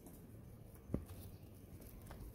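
Faint low background with a single short tap about a second in: a long-tailed macaque shifting its weight on loose gravel as it gets up to move off with its infant.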